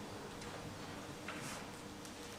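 Quiet hall room tone with a few faint ticks and clicks, about one and a half seconds in.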